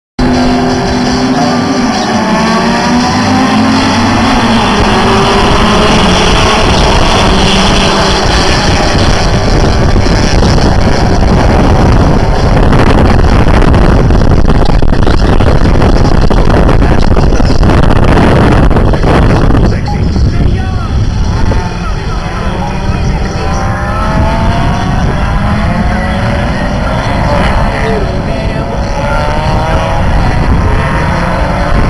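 A pack of small racing touring cars accelerating and racing, several engines revving and rising in pitch as they go up through the gears, over a dense roar. About two-thirds of the way in, the sound drops a little and more engines are heard revving and passing.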